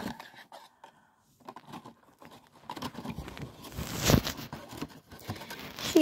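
Handling noises from a plastic tarantula transport cup being opened: scattered light clicks, scrapes and crinkling, with a sharper crackle about four seconds in.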